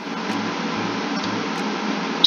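Steady, even background hiss with a faint low hum underneath.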